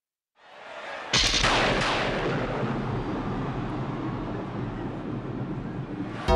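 Arena thunderclap effect: a sudden loud crack about a second in, then a long rolling decay that fills the stadium.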